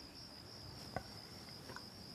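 Faint, steady chirring of crickets, with a single soft tick about a second in.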